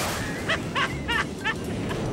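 Video transition sound effects over background music: a whoosh at the start, then four short, high yips about a third of a second apart.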